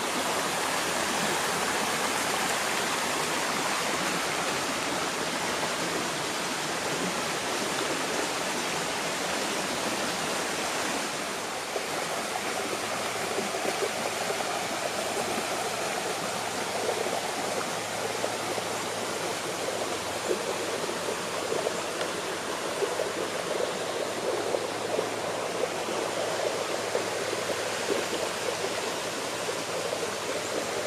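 Small rocky woodland stream rushing over shallow rapids, a steady flow of water. Its sound shifts slightly about twelve seconds in.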